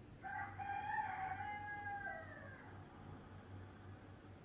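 A rooster crowing once, a call about two seconds long that holds its pitch and then drops at the end.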